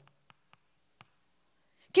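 Chalk on a blackboard while writing: a few short, sharp clicks as the chalk strikes the board, spaced out over the first second, then near silence.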